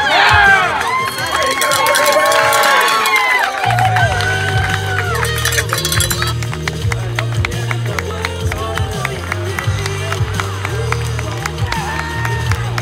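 A crowd of spectators cheering and shouting. About four seconds in, a pop song with a steady thumping bass line comes in and carries on under them.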